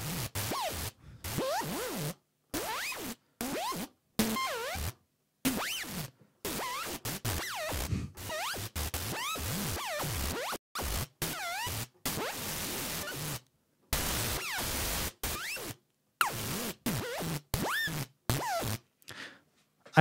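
ZynAddSubFX synthesizer patch imitating a vinyl record scratch. It plays as short noisy bursts, around one a second, each with its pitch swooping up and down, separated by brief silences. The swoops come from a pitch LFO and portamento in a monophonic legato patch.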